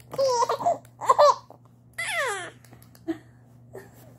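Baby laughing and babbling in three short high-pitched bursts, the last a falling squeal about two seconds in.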